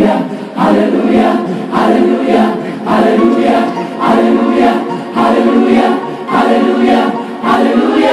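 Gospel choir singing loudly in short, driving phrases that restart about once a second, with a congregation in the sanctuary around it.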